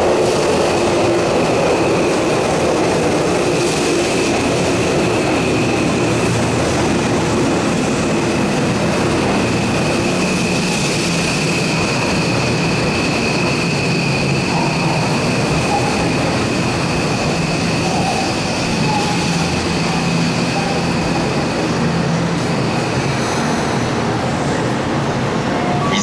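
Tokyo Metro 18000 series subway train pulling into the platform and braking to a stop: wheel and running noise with a steady high whine and lower tones that fall as it slows, from its Mitsubishi SiC VVVF inverter drive.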